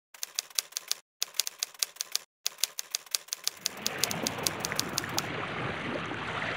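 Rapid, even clicking, several clicks a second, in three runs broken by two short gaps of dead silence. From about three and a half seconds a steady rushing noise rises underneath and takes over as the clicks fade.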